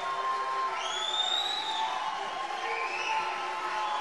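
Audience applauding and cheering in a hall, with a high whistle that rises and holds for about a second, starting near one second in.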